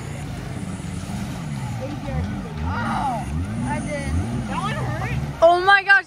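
Jet ski engine running out on the water, its revs swinging up and down about every 0.7 seconds as the throttle works on the run at the ramp.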